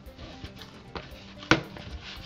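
Hands kneading wheat-flour (atta) dough in a plastic tub, with two sharp knocks, a lighter one about a second in and a louder one about a second and a half in, as the dough is pressed down against the tub. Soft background music plays underneath.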